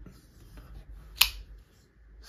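Folding knife opened by its thumb stud, the blade snapping into its locked-open position with one sharp click a little over a second in, over faint handling noise.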